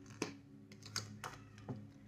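A few faint, light clicks of cards being handled on a table as one is picked up, about five scattered over two seconds, over a low steady hum.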